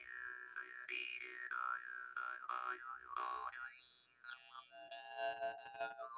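Handmade Ukrainian jaw harp (drymba) being played: repeated plucks over a steady drone, with the overtone melody gliding up and down. A brief lull comes about four seconds in, after which the melody continues on lower overtones.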